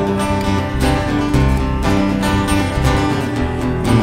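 Acoustic guitar strummed in a steady rhythm during an instrumental gap between sung lines of a live folk song.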